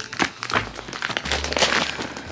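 Plastic packaging crinkling and rustling in irregular bursts as it is handled and unwrapped.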